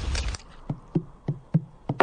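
A wooden spoon stirring in a cooking pot: a loud, rattling scrape that stops about a third of a second in, followed by a run of five light knocks, about three a second.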